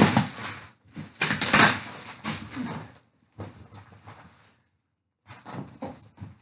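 Packing tape and cardboard flaps of a shipping box being ripped open by hand: loud tearing rips in the first two seconds, then lighter scraping and rustling of cardboard, with another short burst near the end.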